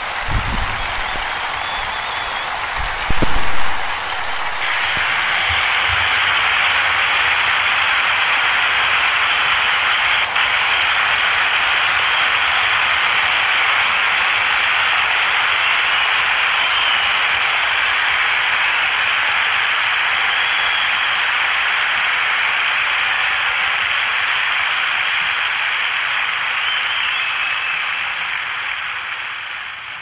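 Audience applauding without a break. It swells about four to five seconds in and fades out near the end, with a brief thump about three seconds in.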